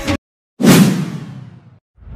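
Background music cuts off just after the start. About half a second later a whoosh sound effect, the transition into an end card, hits suddenly and fades out over about a second.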